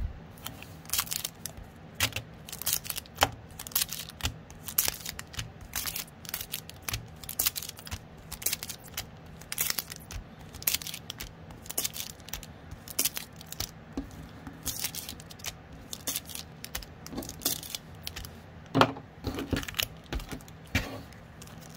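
Foil trading-card pack wrappers crinkling and rustling as a stack of packs is handled and slit open with a knife: a steady run of short crackles, tears and scrapes.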